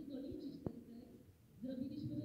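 A woman speaking into a hand-held microphone over a small loudspeaker, with a sharp click about two-thirds of a second in and a short pause before the voice resumes near the end.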